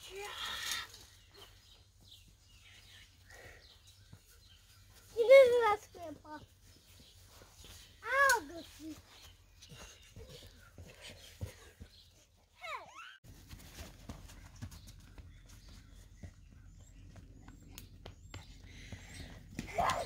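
A few short, high-pitched wordless calls from children's voices, the loudest about five seconds in, with long quiet gaps between them. A low steady rumble comes in about two-thirds of the way through.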